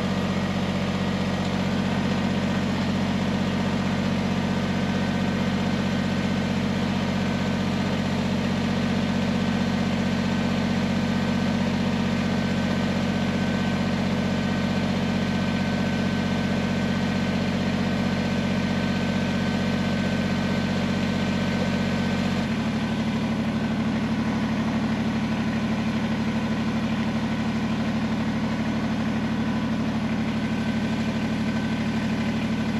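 Kubota BX23S tractor's three-cylinder diesel engine running steadily, with one sudden change in engine speed about two-thirds of the way through.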